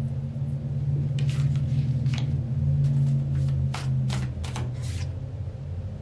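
Tarot cards being handled as the next card is drawn: a run of short flicks and rustles, about eight of them between one and five seconds in. A steady low hum runs underneath.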